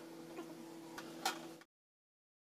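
Small bottles knocking lightly against a plastic refrigerator door shelf as they are set in place: three short clicks over a steady low hum. The sound cuts off abruptly into silence shortly before the end.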